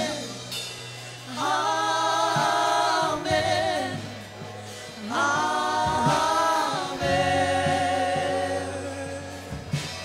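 Church worship band singing a slow "Amen, amen, amen" refrain, with male and female voices in long held phrases over a steady low sustained accompaniment and electric guitar.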